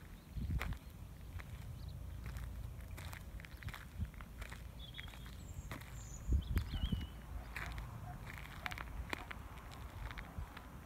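Footsteps on dry, rough ground: irregular soft crunches and scuffs, a little louder about six to seven seconds in, over a steady low rumble.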